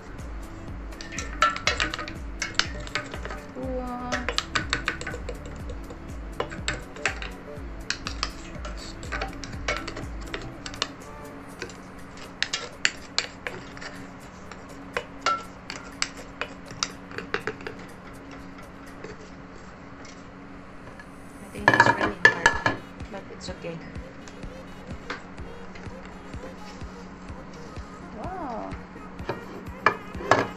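Wooden spatula scraping and knocking against the stainless-steel drum of a stone-roller grinder as ground coffee is scooped out, a run of irregular clicks and knocks with a louder clatter about two-thirds of the way in.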